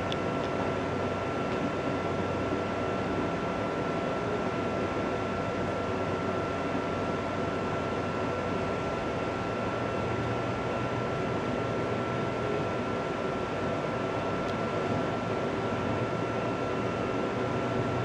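Steady background hiss and hum with a thin, unchanging whine over it; nothing starts or stops.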